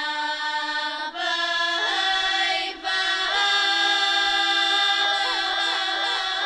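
Girls' choir singing a Bulgarian folk song in a modern arrangement: a low note is held steadily beneath a moving melody, with short breaks between phrases about one and three seconds in.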